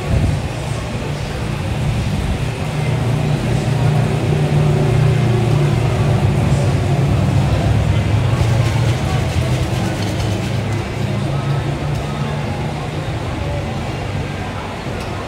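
A motor engine running with a steady low rumble that swells for several seconds and then eases, over the chatter of a market crowd.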